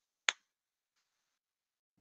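A single short, sharp click about a quarter second in, otherwise near silence.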